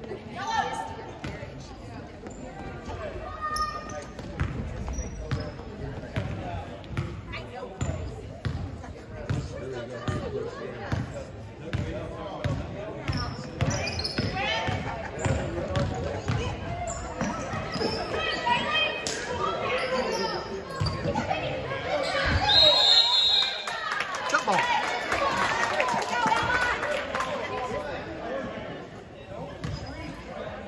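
Basketball bouncing on a hardwood gym floor during play, with players' and spectators' voices echoing around the hall.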